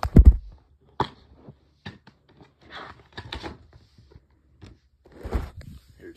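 A DVD case being handled and opened and its paper chapter insert drawn out: a loud knock near the start and another about a second in, then clicks, scrapes and short rustles of paper and plastic.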